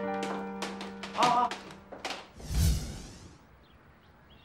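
Background music score with held notes, ending in a transition whoosh with a deep thump about two and a half seconds in, then fading out to quiet.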